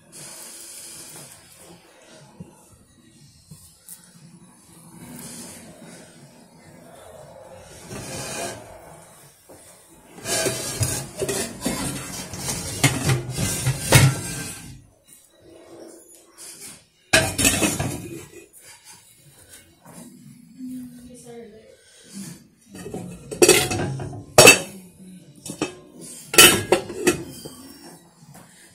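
Pots and pans clanking on a gas stove's grates as a lidded pot is set on a burner beside a frying pan: a dense stretch of clatter near the middle, then a few separate sharp knocks.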